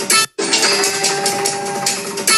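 Live stage folk music: large double-headed drums struck in a steady beat under a held, reedy wind-instrument note. The sound breaks off for a split second just after the start, then resumes.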